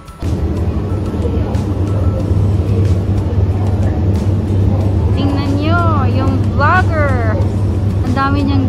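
Steady, loud low rumble of a railway station platform, with several wavering, gliding pitched tones over it from about five seconds in.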